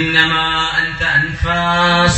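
A man's voice chanting a verse in drawn-out melodic phrases, with long held notes rather than ordinary speech.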